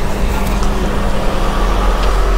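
A generator running with a steady low hum that fills the background.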